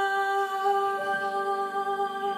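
A woman singing, holding one long note.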